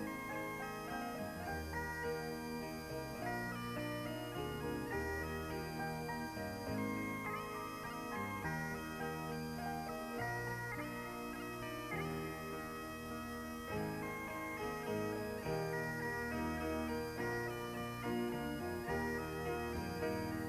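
Great Highland bagpipe played solo: the chanter carries the melody of a slow air, moving from note to note over the steady drones.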